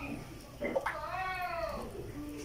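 A single drawn-out animal call about a second in, rising and then falling in pitch.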